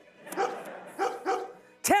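Two short dog-like barks, about half a second apart, voicing a puppet dog's reply.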